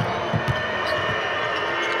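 Basketball being dribbled on the court floor, a few thumps in the first half-second, over steady arena noise.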